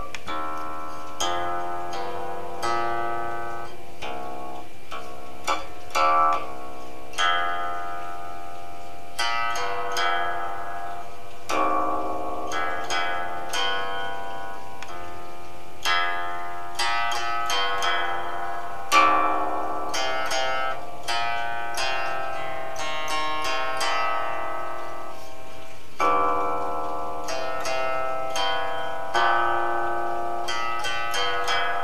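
A long zither played solo with plucked notes, single notes and short clusters each ringing out and fading in a slow, free-flowing improvisation. Some held notes waver in pitch, and the strongest pluck comes about two-thirds of the way through.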